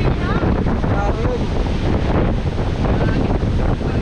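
Strong storm wind buffeting the microphone, a steady low rumbling rush with gusts, during a typhoon-driven monsoon.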